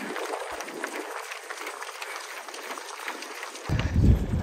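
Scattered clapping from roadside spectators as a runner passes, an even patter of hands. Near the end a gust of wind rumbles on the microphone.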